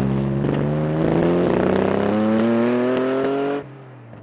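Alfa Romeo Busso 3.2-litre V6 of a Lancia Stratos replica, fitted with individual throttle bodies, accelerating hard through a gear with a steadily rising engine note. The sound cuts off suddenly near the end.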